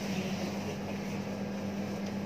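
Steady ventilation hum in the room: a constant low tone with an even wash of air noise, from a ceiling fan and air conditioning running.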